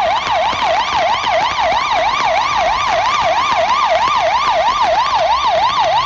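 An electronic siren wailing rapidly up and down in a steady yelp, about three sweeps a second.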